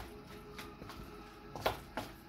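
Chopped chicken fillet and mayonnaise being kneaded by hand in a stainless steel bowl: quiet, wet squishing, with a sharp click against the bowl near the end.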